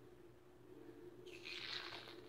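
Short hiss of hair mousse being dispensed from its can, starting a little over a second in, over a faint steady hum.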